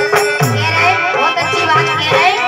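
Loud folk music: drum strokes in a steady beat with jingling percussion, under a wavering melody.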